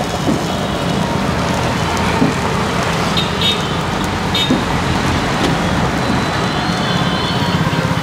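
Steady road-traffic noise, with a couple of brief high-pitched tones about three and four and a half seconds in.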